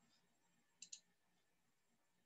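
Near silence broken by two quick, sharp clicks about a second in, a tenth of a second apart, typical of a computer mouse being clicked.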